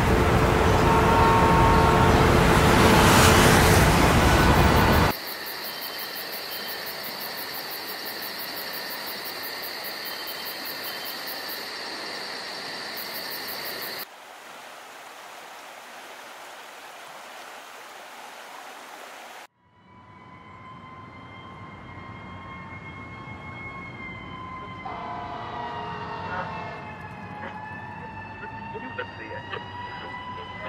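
City street traffic noise for the first few seconds, cut off abruptly, followed by quieter steady background hiss that changes at hard cuts. From about two-thirds of the way in, a distant siren wails slowly up and down over the city.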